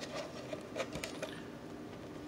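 Faint handling noise: a few light clicks and rustles as a plastic armor forearm piece is held and moved.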